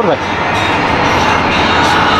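Loud, steady city street noise: a dense rumbling wash of sound with a faint high whine over it.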